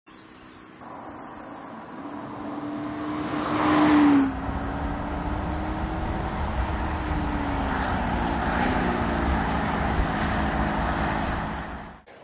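Audi SQ5 V6 engine as the SUV drives up and passes close, its pitch climbing and growing louder, then dropping sharply about four seconds in. It then runs on at a steady cruise with road rumble, fading out near the end.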